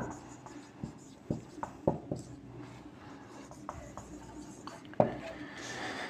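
A few faint, scattered small clicks and taps in a quiet small room, with a slightly sharper click about five seconds in.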